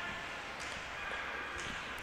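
Quiet ice hockey rink ambience during play: a steady low hiss of skates on the ice, with a few faint taps.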